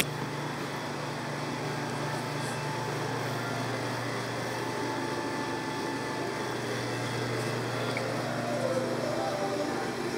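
Steady low machine hum, like a fan or air handler running, with a sharp click right at the start.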